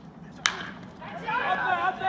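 A wooden baseball bat hitting a pitched ball: one sharp crack about half a second in. About a second later, voices start calling out as the ball is put in play.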